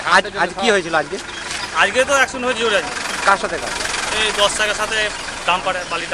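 People talking, with a vehicle engine running in the background.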